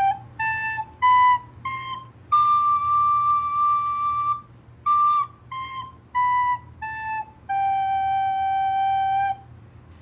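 Recorder playing a five-note step exercise: four short notes stepping up G, A, B, C to a long held D, then four short notes stepping down D, C, B, A to a long held G.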